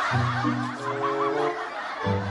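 A studio audience laughing and chuckling together, over background music of low held notes that step from one pitch to the next.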